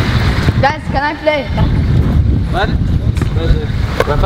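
Boys shouting short calls across a football pitch, about a second in and again near three seconds, over a steady low rumble of wind on the microphone.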